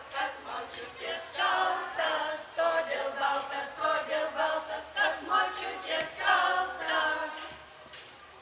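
Unaccompanied group singing of a Lithuanian folk song by older women and children, in the singing tradition of the Kaunas district villages flooded by the Kaunas lagoon. The song ends just before the close.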